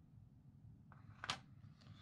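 Near silence with a faint, steady low hum, broken by one brief sharp sound a little over a second in.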